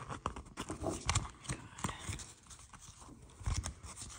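Fingers and fingernails handling planner stickers on a glossy sticker sheet: irregular light clicks, taps and rustles as stickers are pressed down and lifted.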